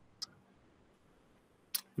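Near silence in a pause between speakers, broken by one short, sharp click about a quarter second in and a brief faint sound near the end.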